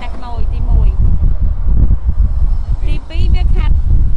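A person speaking, with pauses, over a loud, steady low rumble.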